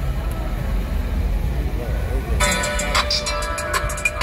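Busy city street at night, with a low rumble of traffic and faint voices. About two and a half seconds in, loud music with a steady beat suddenly cuts in over it.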